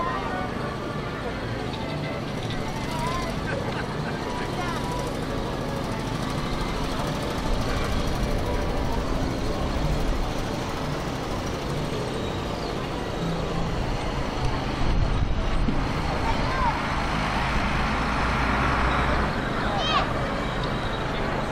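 Outdoor show-field ambience: indistinct voices of people nearby over a steady low rumble of vehicles and engines, with no single sound standing out.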